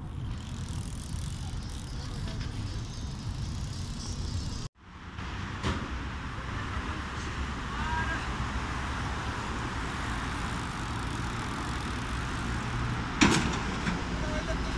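Outdoor street ambience with a steady traffic hum, broken by an abrupt cut about a third of the way in. Near the end, a sharp loud knock as a bike lands on a concrete ledge.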